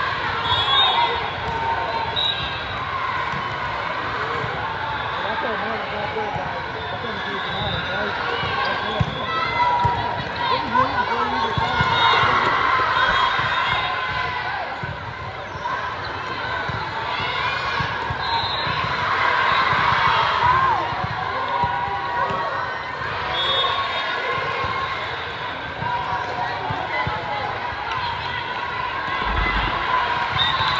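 Volleyball rally in a large sports hall: the ball is struck and set with sharp slaps, and shoes squeak briefly on the court. Behind it runs the steady chatter and shouts of spectators and players, swelling louder twice.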